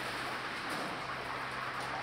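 Commercial deep fryer's oil sizzling steadily at the robot-tended fry station, over a low steady hum of kitchen machinery.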